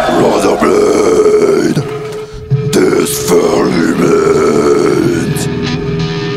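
Deep guttural death-metal vocals growled into a microphone over a steady held guitar tone, in a live band recording; the vocals break off briefly a little past two seconds in.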